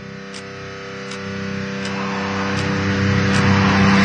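Intro sound design: a steady low drone with a held chord swelling steadily louder, under a soft tick repeating about every three-quarters of a second.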